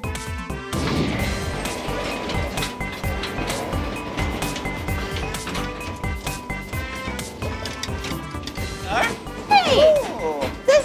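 Background music with a steady beat over a miniature park train rolling along its track, with repeated clacks and knocks throughout. A voice comes in near the end.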